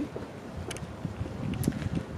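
Wind buffeting a handheld camera's microphone: a low, uneven rumble with a few faint clicks.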